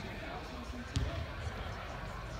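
Background voices with a single sharp thump about halfway through.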